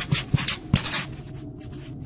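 Marker pen writing, a run of quick scratchy strokes with short pauses between them.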